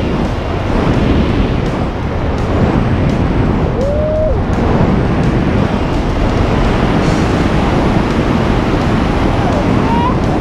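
Steady wind rushing over the camera's microphone during a tandem parachute descent under the open canopy, with a brief voiced exclamation about four seconds in.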